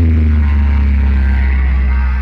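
Electronic dance music played very loud through a DJ sound system's speaker wall: a deep bass note that finishes a falling pitch sweep at the start, then holds steady under fainter higher sounds.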